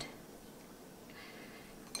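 Wire whisk stirring gravy mix and water in a small glass bowl: faint scraping and light clinks of the metal tines against the glass.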